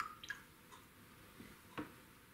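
A few faint, separate clicks and small taps of a watercolour brush and painting supplies being handled, over quiet room tone.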